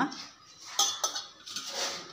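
Light clinks of stainless-steel kitchenware as herbs are dropped into a steel mixer-grinder jar: two sharp metallic clinks about a second in, the first ringing briefly, then soft rustling and scraping.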